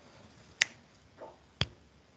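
Two sharp, brief clicks about a second apart, with a faint murmur between them, over a low background hiss.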